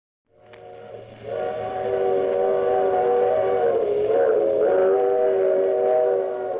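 Steam locomotive whistle sound effect, a chord of several notes swelling in about a second in and held, its pitch sagging briefly midway, in a narrow-band old radio recording.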